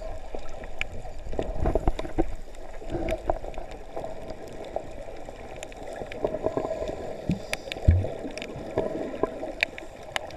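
Underwater sound picked up by a submerged camera: a steady, muffled wash of water with many scattered sharp clicks and crackles, and a single low thump about eight seconds in.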